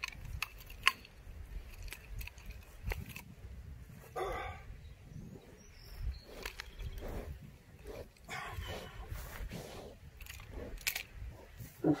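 Nunchucks being swung: scattered sharp clicks and clacks from the chain and sticks over a low rumble. A short voice-like call about four seconds in.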